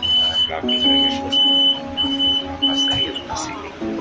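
An electronic beeper sounding five short, high beeps about two-thirds of a second apart, then stopping, over background music.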